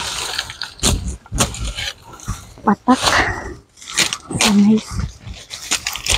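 Dry coconut palm fronds crackling and rustling as they are handled and cut, with irregular sharp snaps and scrapes. Two short, low vocal sounds come about three seconds in and again around four and a half seconds.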